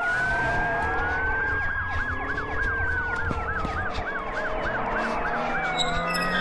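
Several emergency-vehicle sirens sounding at once, overlapping slow wails, with one switching to a fast yelp of about three sweeps a second in the middle, over a low rumble.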